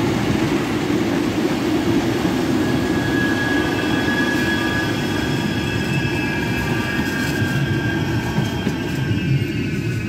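A Northern passenger train and a Metrolink tram pass close by over a level crossing, a loud steady rumble of wheels on rails. From about three seconds in, a high whine of several pitches rises over it and slowly falls. The sound eases off near the end as the vehicles clear the crossing.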